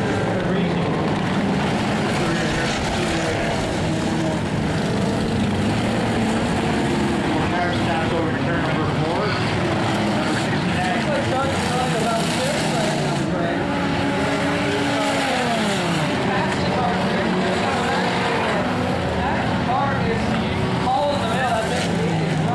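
Many stock-car engines running and revving around a dirt oval during an enduro race, a steady mix of engine noise with pitches rising and falling as cars go by. One engine note drops away clearly about two-thirds of the way through.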